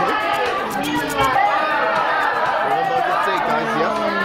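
Chatter of several voices at once, in a large studio hall: contestants and audience members talking over one another.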